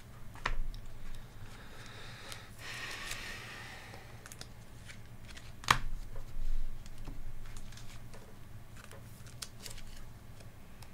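Small desk-handling sounds: scattered light clicks and taps, a soft rustle a few seconds in, and one sharp click near the middle.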